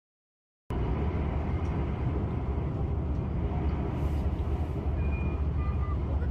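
Silent for the first moment, then a steady low rumble of a moving vehicle with road noise that starts abruptly and runs on evenly.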